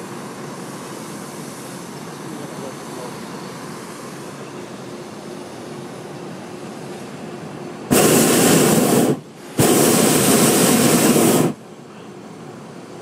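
Hot-air balloon's propane burner firing about eight seconds in: two loud, steady blasts, the first just over a second long and the second about two seconds, with a brief break between them, giving the balloon lift.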